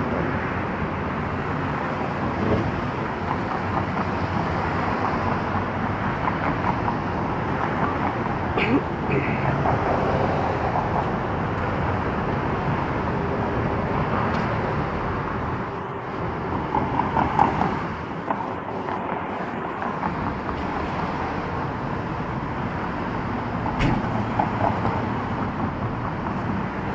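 Steady city road traffic: cars and vans running along a multi-lane road, heard as a continuous hum with slight swells as vehicles pass.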